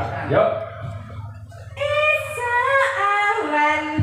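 A woman's voice singing through a PA, starting about two seconds in after a short spoken bit and a lull. She holds long, steady notes that step down in pitch near the end, as the opening of a Javanese song.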